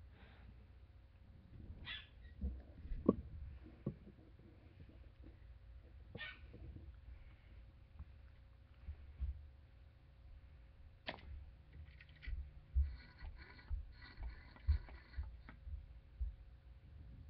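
Faint handling noise of a trombone being raised into playing position: scattered clicks and soft low bumps, more frequent near the end, over a faint steady hum. No notes are played yet.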